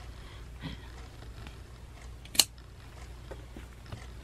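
A single sharp snip of scissors about two and a half seconds in, trimming a stray thread on an embroidered apron.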